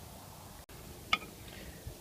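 One short, faint click of a metal star wrench meeting a cover screw on a dome security camera's housing, over low steady hiss.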